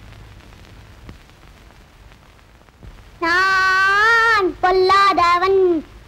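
Low room tone, then about three seconds in a child's high voice holds one long note for about a second, falling away at its end, followed by a few shorter phrases.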